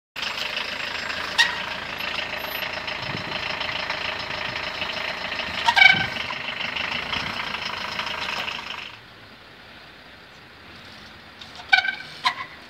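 Trials bike landing on concrete slabs with two sharp, ringing metallic clanks, a few seconds apart. Under them runs a steady mechanical drone that cuts off about nine seconds in, and a few more knocks come near the end.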